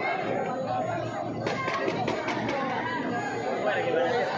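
Spectators chattering in a large, echoing sports hall, with a quick run of sharp clacks from about a second and a half to two and a half seconds in, from eskrima fighters' sticks striking.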